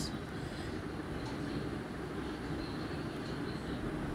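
Steady low rumble and hiss of background room noise, with no distinct events.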